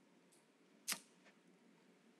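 Near silence in a pause between sentences, broken by a single short, sharp click about a second in.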